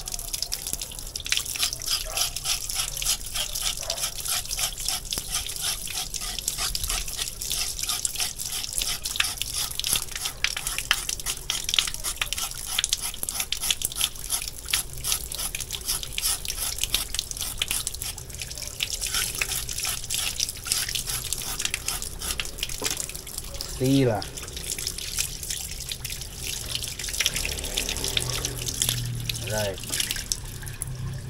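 Tap water running into a concrete sink while a knife scrapes the skin off a carrot in quick, repeated strokes. Near the end a short, loud pitched sound breaks in once.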